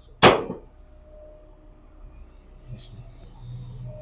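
A metal compartment door of an Amazon Hub Locker slammed shut once just after the start: a sharp bang with a short ring. A faint low hum comes in about three seconds in.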